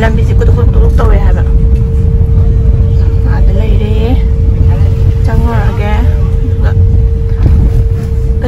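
Car cabin noise while driving slowly: a steady low rumble of engine and road, with a constant hum above it. Voices talk briefly at a few moments.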